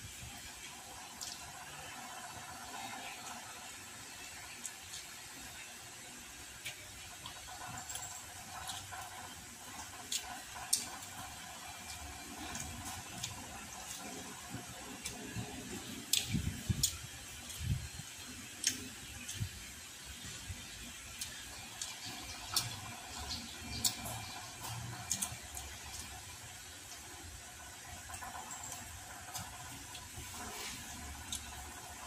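Close-up chewing of crispy deep-fried pork belly and rice: wet mouth sounds with scattered sharp crackles from the crunchy skin, over a steady background hiss.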